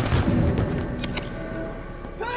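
A heavy thud at the start, trailing into a low rumble that fades over about a second, with a few faint sharp clicks after it, under a tense film score.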